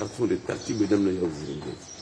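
A man speaking in a low voice.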